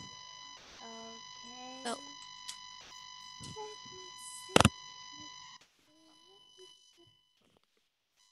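A steady, high electronic tone with overtones in video-call audio, the strange noise of a faulty microphone or audio line, which cuts off about five and a half seconds in. A sharp click comes shortly before it stops.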